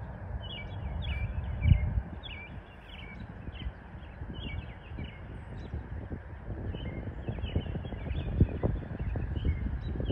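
Birds calling over and over in short chirps, over a low rumble of wind on the microphone that swells in gusts.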